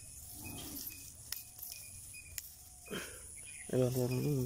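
Quiet outdoor background with short, repeated high chirps and a couple of light clicks; a man starts speaking near the end.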